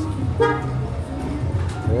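A vehicle horn toots briefly about half a second in, over the steady low hum of street traffic.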